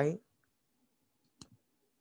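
A man's speech trails off, then there is a single short click about a second and a half in.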